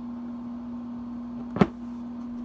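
A single sharp knock about one and a half seconds in, over a steady low hum.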